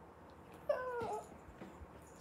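A child's brief high-pitched vocal squeal, about half a second long and falling in pitch, around a second in.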